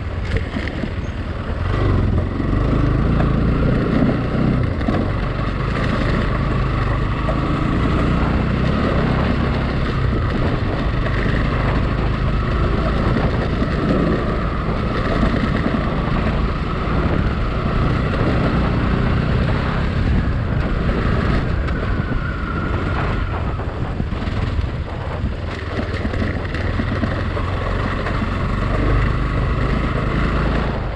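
Motorcycle engine running under way on a rough gravel track, with wind buffeting the microphone and scattered knocks and rattles from the bumps.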